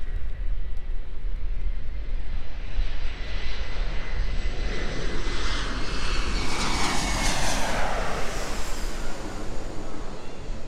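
Jet airliner passing low overhead on its landing approach. The engine noise swells over several seconds, is loudest about seven to eight seconds in, then fades, with a whine that falls in pitch as it goes by.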